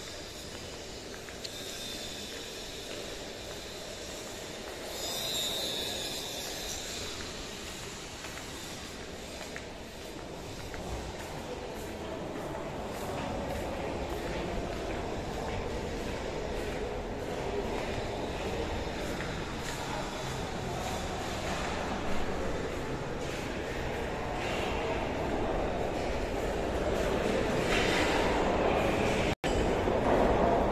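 Steady indoor background noise of a large building while walking, growing louder over the last few seconds as the sound of the mess hall comes in, with a brief hiss about five seconds in.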